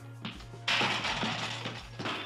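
Dense crackling and rustling of brush and branches, starting suddenly about two-thirds of a second in and lasting just over a second: a botched paraglider takeoff crashing into the bushes.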